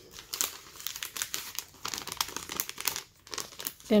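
Clear plastic self-seal envelope crinkling and crackling as it is handled and turned over with crocheted coasters inside. Many short crackles, with a brief lull a little past three seconds.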